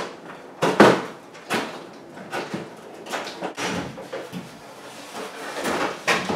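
Sheet-metal range hood body clunking and rattling as it is handled and lifted up against the underside of a wooden kitchen cabinet. A few sharp knocks come in the first two seconds, the loudest about a second in, followed by lighter taps and scrapes.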